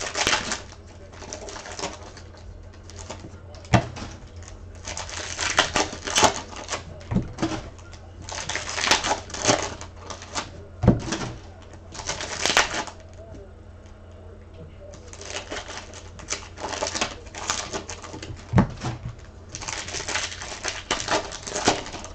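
Paper trading cards rustling and sliding as a stack is flipped through by hand, in repeated bursts with a few sharp taps along the way.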